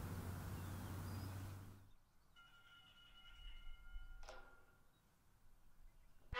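Faint outdoor background with a steady low hum that cuts off about two seconds in, leaving near silence with a faint brief tone and a single click.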